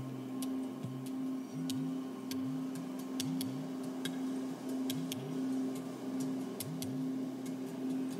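Ambient meditation background music: a steady held drone with soft low notes that slide downward about twice a second, sprinkled with faint scattered ticks and clicks.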